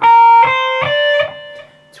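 Electric guitar playing three single notes in a rising step, frets 11, 13 and 15 on the B string (B-flat, C, D), part of a D minor scale played three notes per string. Each note rings on, and the last fades out about halfway through.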